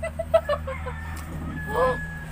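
A chicken clucking: a quick run of short clucks in the first part, then one short call near the end, over a steady low hum.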